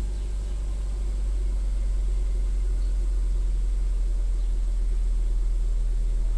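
A car engine idling, a steady low hum that does not change.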